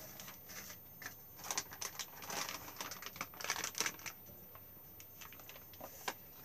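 Faint rustling and light irregular clicks of paper being handled, clustered from about one and a half to four seconds in.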